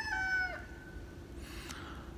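The end of a rooster's crow: a held, pitched note that drops in pitch and stops about half a second in.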